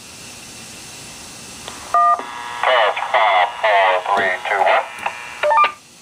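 ADS-SR1 simplex repeater replaying a recorded voice test count over a handheld two-way radio. It starts with a steady hiss, gives a short two-tone beep about two seconds in, then plays the tinny, band-limited recorded voice, followed by more short beeps near the end. The playback sounds like crap, which the operator puts down to interference from the radio's charging base.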